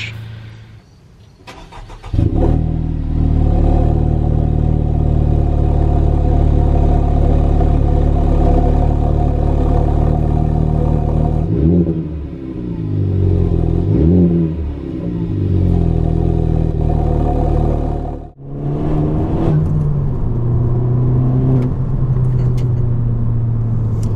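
Honda Civic Type R (FK8) engine and exhaust. The engine note comes in suddenly about two seconds in and runs steadily. It is revved several times in the middle, the pitch rising and falling, and the note changes to a steadier, lower drone after a brief break near the end.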